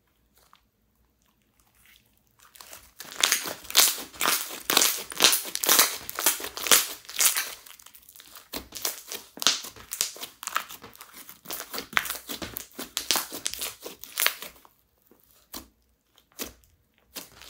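Clear slime mixed with crushed eyeshadow being pressed and kneaded by fingers on a tabletop, giving a dense run of sticky crackles and pops. It starts about two and a half seconds in and dies away near the end.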